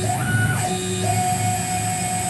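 Tormach PCNC1100 mill's axis stepper motors whining as the table jogs across to the other side of the workpiece: a chord of steady tones that changes pitch partway through.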